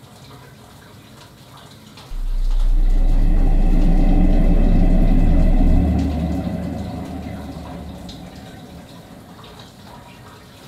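A sudden loud rush of water with a deep rumble underneath. It starts about two seconds in, holds for a few seconds, then fades away slowly.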